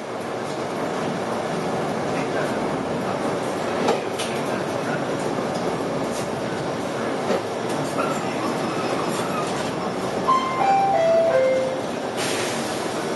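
Interior noise of a King Long KLQ6116G city bus driving along: steady engine and road noise with a couple of brief knocks. Near the end comes a four-note chime stepping down in pitch, the signal that introduces the bus's automated stop announcement.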